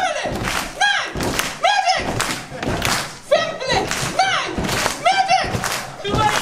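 Male voices chanting a song a cappella into microphones, a string of drawn-out, rising-and-falling syllables about one a second, with loud thuds of feet stamping on the wooden stage steps.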